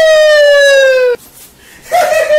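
A loud, high-pitched wail in a man's voice: one long held note, slowly falling in pitch, that breaks off about a second in. A second wail starts right at the end.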